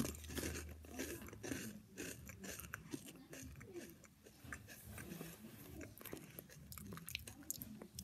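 Freeze-dried peach puff candy being bitten and chewed, close to the mouth: many faint, irregular crunches.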